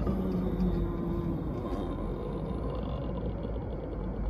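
Steady road and engine rumble inside a moving car's cabin.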